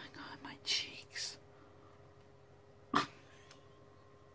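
A woman's breathy, mostly silent laughter: a few short hissing breaths in the first second or so. Then a single sharp knock about three seconds in.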